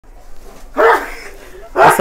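A single short, loud call about a second in, its pitch rising then falling. A man's speech begins right at the end.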